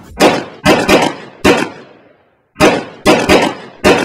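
Gunshots: eight sharp bangs in two groups of four, each trailing off with a short echo.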